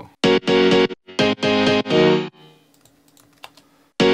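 Playback of an EDM drop loop from a DAW: short, repeated pitched synth chord hits, auditioned through a soothe resonance-suppressor plugin. The loop stops a little over two seconds in, leaving a faint held tone and a few computer mouse and keyboard clicks.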